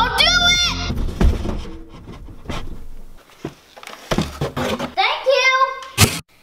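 A child's high-pitched voice calling out without clear words at the start and again near the end, with scattered knocks and thumps in between.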